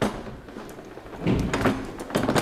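Plastic clunks and clicks of an infant car seat carrier being seated and latched onto its Isofix base: a sharp click at the start, then a louder rattling clatter in the second half and another click at the end.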